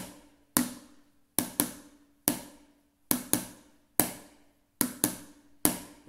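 A spoon tapping a lidded plastic pot in a steady rhythm: a quick pair of taps, then a single tap, repeated over and over, each tap ringing briefly.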